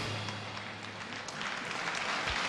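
Floor exercise music ending, its last low note held and cutting off about a second in, as the arena crowd applauds.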